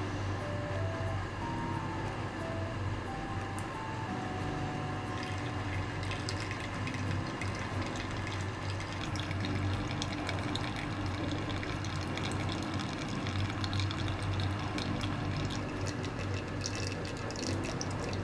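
Hot water poured from a kettle into a drip-bag coffee filter and trickling and dripping through into a glass jug. The pouring starts about five seconds in and grows busier toward the end. Soft background music with a simple melody plays underneath.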